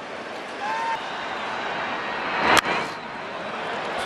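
Steady ballpark crowd noise, with a single sharp smack about two and a half seconds in as a pitch reaches home plate.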